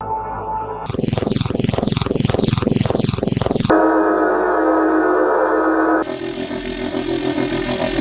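Synthesized engine sound effects from a sound library, played one after another: a brief tone, then a run of repeated sweeping whooshes, then a steady buzzing drone, changing about six seconds in to a harsher, noisier buzz.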